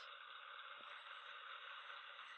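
Near silence: a faint, steady hiss of room tone and recording noise.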